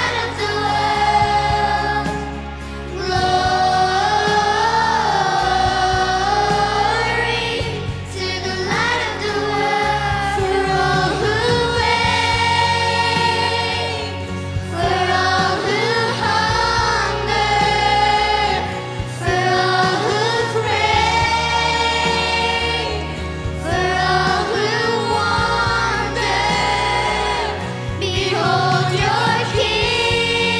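Girls' voices and a children's choir singing a Christmas worship song live, in sustained melodic phrases over instrumental backing.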